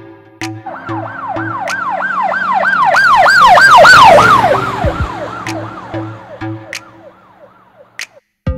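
A police siren wailing in fast sweeps, about three a second, growing louder to a peak about halfway through and then fading away, over electronic music.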